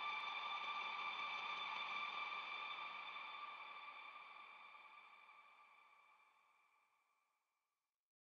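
Closing held chord of a worship song: a steady, sustained ambient pad of several tones with no beat, fading out gradually over the last five seconds to nothing.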